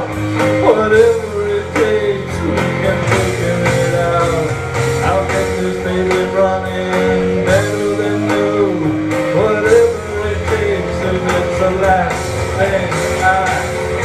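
Live band playing a rock-and-roll song between sung lines: electric guitar over bass and drums.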